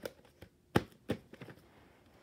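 A handful of sharp plastic clicks and knocks from VHS tapes and their cases being handled and put down, the loudest about three-quarters of a second in.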